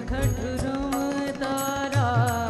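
Live Indian song: a woman singing a melody with gliding ornaments, accompanied by harmonium, tabla and acoustic guitar.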